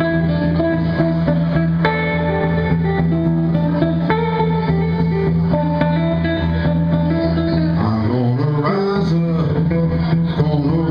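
Electric guitar playing a blues-style passage of picked notes and chords in a live performance; about eight seconds in, a man's singing comes in over it.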